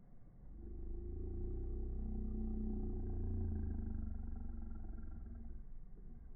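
A passing engine's low rumble, with a steady hum over it, swelling over the first couple of seconds and fading away near the end.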